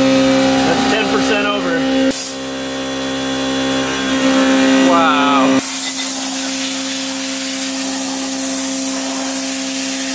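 Haas CNC mill running a carbide roughing end mill through 1018 steel: a steady machine whine made of several pitched tones. From about halfway through, a hiss of coolant spray and cutting noise joins it.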